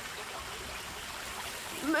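Steady rush of running water from a waterfall, an even hiss with no rhythm. A voice begins near the end.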